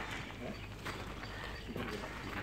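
A few light knocks as metal buckets and pipe pieces are handled and set down on the ground, over steady outdoor background noise.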